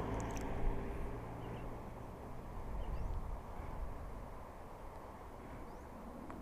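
A motor scooter engine idling, a low steady hum that fades over the first two seconds or so, with a few faint bird chirps.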